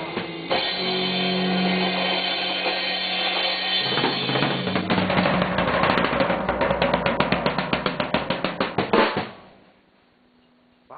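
A band of acoustic guitars and drum kit ends a song: a held strummed chord rings, then a drum roll of fast, even hits builds louder from about five seconds in. A final hit comes just before nine seconds, and the sound dies away quickly.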